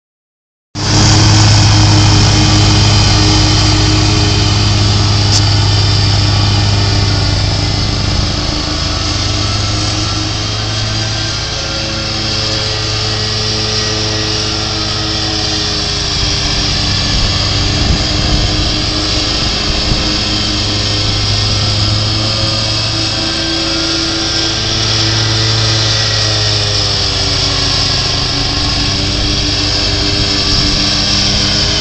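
Riding lawn mower engine running steadily under mowing load, starting a little under a second in, with small dips in pitch now and then.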